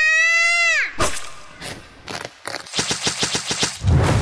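A young boy's long, high, held shout that drops in pitch and breaks off about a second in. Then a few loose knocks and a fast rattle of clicks, about ten a second, lasting roughly a second.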